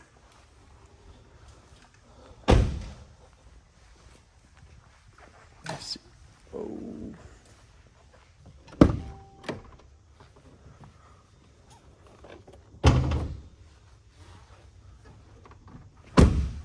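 Mercedes Sprinter van doors shutting with solid thunks, three times: once about two and a half seconds in, again near nine seconds with a lighter knock just after, and a third time near thirteen seconds.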